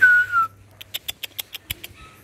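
A person's short whistle with a quick upward flick into it and a slight downward slide. About a second in, a quick run of about eight sharp clicks follows, roughly seven a second, over a steady low hum.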